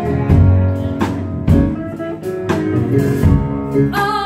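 Live band playing between sung lines: electric guitar and electric bass over a drum kit, with no voice.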